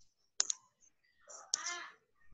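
Two sharp clicks in quick succession about half a second in, then a brief voice sound near the end.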